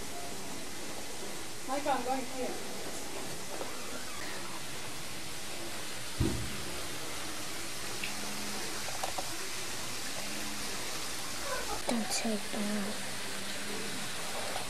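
Faint voices at a distance, a couple of short phrases, over a steady background hiss, with one low thump about six seconds in.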